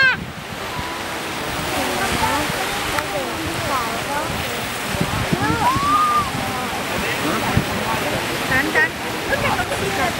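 Ocean surf washing against the rocks with a steady wash of wind, under scattered overlapping voices of people talking nearby.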